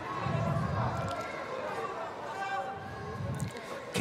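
Murmur of voices and crowd in a large sports hall, with faint distant speech and a low rumble early on.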